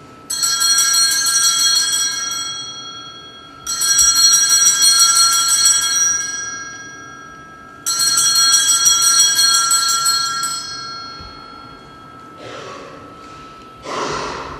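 Altar bells (a cluster of small handbells) rung three times, about four seconds apart. Each ring is a sudden jangling burst that fades away over a few seconds. The ringing marks the elevation of the host at the consecration.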